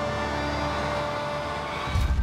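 Horror-trailer sound design: a sustained swell of steady high tones over a hiss that grows brighter, cut off right at the end by a deep boom.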